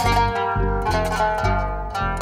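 Qanun being plucked in a quick run of bright, ringing notes, playing a dolab, a short instrumental prelude in maqam bayati on G. An upright bass plucks low notes underneath in a steady pulse about twice a second.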